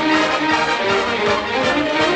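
Orchestral music with brass instruments, an instrumental passage without singing.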